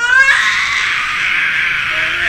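Baby letting out one long, loud scream that rises in pitch at the start and then holds, rough rather than clear.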